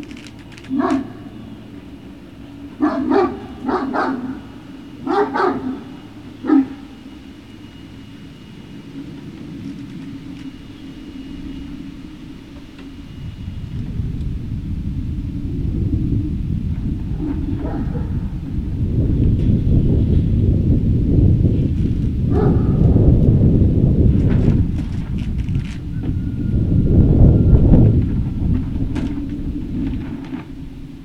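Great Dane puppies barking, several short barks over the first few seconds. From about halfway a low rumble builds and becomes loud toward the end.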